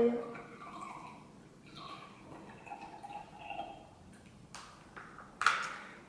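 Water poured from a small cup into a drinking glass for about four seconds, then a click and a louder sharp knock near the end as the cup is set down on the table.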